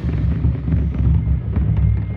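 Marching bass drum played right at the microphone in a continuous low rumble rather than single strikes, with the band faintly behind it.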